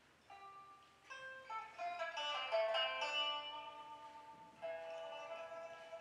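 Pipa, the Chinese pear-shaped lute, played solo: a few single plucked notes at first, a quicker run of notes from about a second in, and a louder sustained passage from about two-thirds in.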